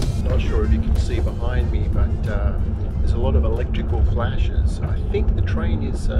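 Steady low rumble of a passenger train running, heard inside the carriage under a man's talking.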